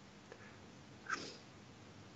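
Near silence: quiet room tone, with one brief, faint sound just over a second in.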